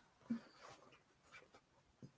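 Near silence: quiet room tone with a few faint, short handling sounds, the loudest a soft thump about a third of a second in.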